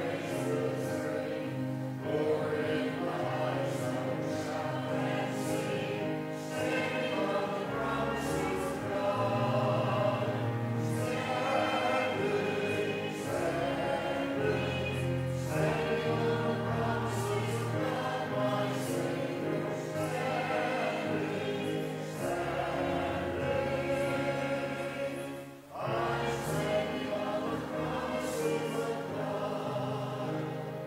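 Church congregation singing a hymn together, in long sustained phrases with a brief break between lines near the end.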